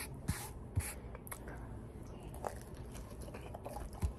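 Faint mouth sounds of chewing and lip smacking: a few scattered small clicks over quiet room tone.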